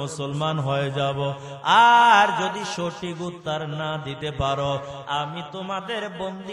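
A man's voice chanting a sermon in a melodic, sing-song delivery over microphones, with a louder, higher held note about two seconds in.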